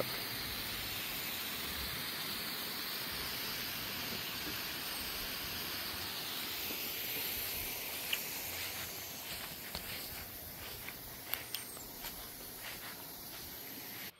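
Pop-up rotor lawn sprinkler head spraying water as it turns side to side: a steady hiss of spray, growing fainter about halfway through, with a few light clicks near the end.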